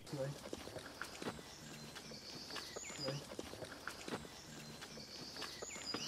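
Footsteps on a woodland path, a run of small crunches and clicks, with faint high chirps among them.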